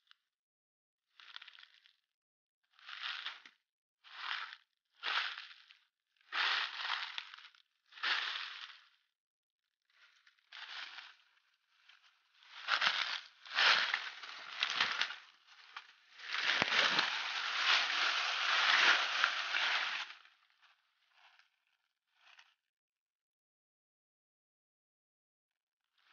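Dry leaf litter and undergrowth crunching and rustling in short bursts about once a second, then in longer stretches, the loudest lasting about four seconds near the end.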